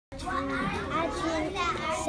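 Children's voices talking at once: a young girl speaking, with other children chattering around her.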